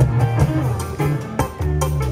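Live rock band playing: electric guitars, bass and drum kit, with strong bass notes and drum hits, heard through a concert PA.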